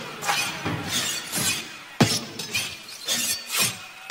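Glass shattering over and over in a rapid run of crashes, with a hard smash about halfway through, under faint music.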